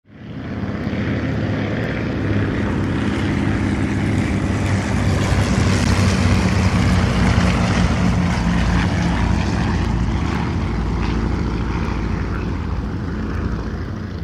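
Propeller airplane engine droning steadily, fading in at the start and loudest about halfway through, like a plane passing over.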